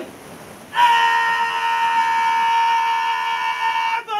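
A single high, steady whistle-like note, flute-like in tone, starts about a second in and is held at one unchanging pitch for about three seconds.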